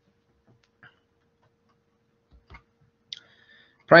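A few faint, scattered clicks in an otherwise quiet pause, with a woman's voice starting right at the end.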